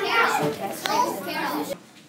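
Children's voices talking over one another, no words clear, cutting off abruptly near the end.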